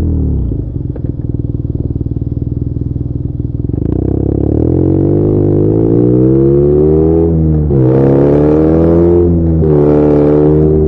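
BMW R nineT's boxer twin, fitted with aftermarket headers and an exhaust flapper-valve delete, drops in revs as the throttle closes, then runs off-throttle with a choppy pulsing for about three seconds. The revs then climb under acceleration, broken twice near the end by brief dips from upshifts.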